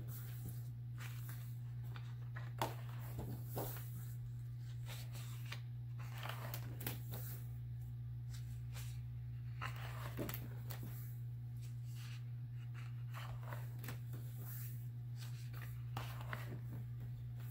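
Heavy cardstock pages of a large spiral-bound coloring book being turned and handled: scattered paper rustles and slides with a few light knocks, the sharpest about two and a half seconds in, over a steady low hum.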